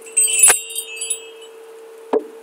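Metal chimes shaken once: a cluster of high, bright ringing tones with one sharp strike in the middle, dying away within about a second over a steady hum.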